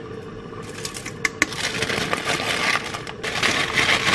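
Wax paper and a plastic bag crinkling and rustling as shredded cheese is tipped from the paper into the bag, with two sharp clicks shortly after a second in and the rustling loudest near the end.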